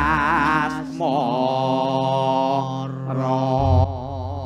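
A man singing a slow Javanese song in long held phrases with heavy vibrato, over low sustained instrumental accompaniment. A deep low stroke sounds near the end.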